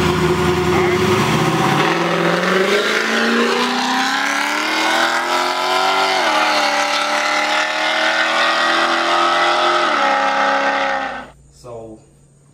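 A drag car launching from the line under full throttle. The engine note climbs steeply, dips at a gear change about six seconds in, climbs again and dips once more near ten seconds, then cuts off abruptly just before the end.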